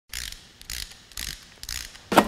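Logo intro sound effect: four short mechanical-sounding bursts of hiss, about two a second.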